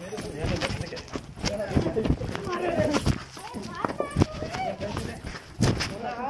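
Raised voices shouting over one another during a scuffle, with irregular thuds and sharp knocks from the grappling.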